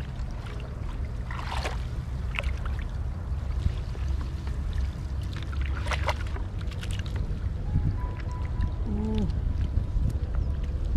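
Water sloshing and splashing in shallow floodwater as a woven bamboo basket is swept through it and lifted, with water running off and draining through the weave. Splashes stand out about a second and a half in and again around six seconds, over a steady low rumble.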